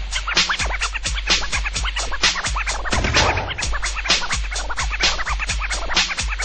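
Freestyle dance megamix with DJ turntable scratching cut rapidly over the beat; a deep bass line comes in right at the start.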